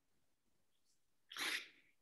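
Dead silence, broken about one and a half seconds in by a man's single short, sharp intake of breath just before he starts to speak.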